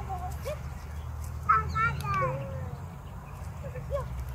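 A toddler's high, wordless vocal sounds, a few short squeals and babbles, the longest about halfway through, over a steady low rumble.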